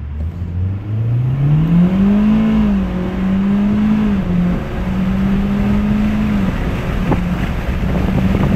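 Mitsubishi Lancer Ralliart's turbocharged 2.0-litre four-cylinder accelerating hard at full throttle, heard from inside the cabin. It runs on an upgraded boost pill and a new basemap tune. The engine note climbs steeply for the first two and a half seconds, then holds high with a short dip at each quick upshift.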